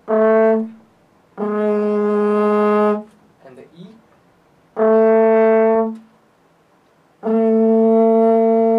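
French horn sounding the same held note four times: a short note, then three longer ones. Its tone alternates between a darker, muffled sound, with the hand closed in the bell for three-quarter stopped (echo horn), and a brighter open tone at the same pitch.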